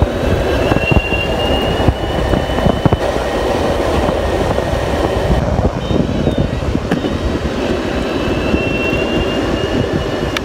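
Electric skateboard ridden fast over asphalt at about 35 km/h: a dense, steady rumble of wind on the microphone and wheels on the road, with a thin high whine from the motor drifting slightly in pitch.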